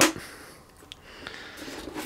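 Faint handling of a plastic robot vacuum as it is fingered and lifted, with one small click about a second in.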